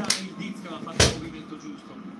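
A single hard thump on a desk about a second in, after a lighter sharp tap at the start, with faint talk underneath.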